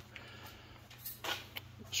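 Quiet pause in a garage: a steady low hum of room tone, with a brief soft rustle a little after halfway and a short breath-like sound near the end.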